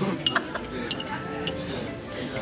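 Plates and cutlery clinking, several sharp taps in the first second and a half, over background music.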